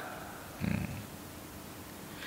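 Quiet pause with faint room tone, broken by one brief, low murmur from a man's voice a little after half a second in.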